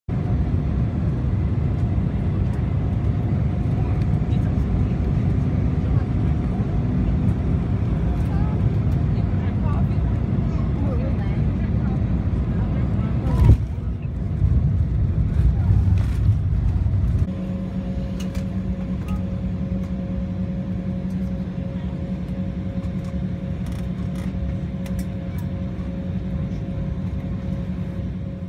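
Aircraft cabin noise as the plane rolls along the runway: a loud, steady engine and rolling rumble with one sharp knock about halfway through. A little past the middle the rumble drops and a steadier, quieter engine hum remains as the plane slows.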